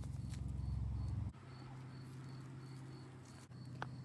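Quiet outdoor background: a cricket chirping steadily about three times a second over a low steady hum that drops in level about a second in, with a couple of faint clicks.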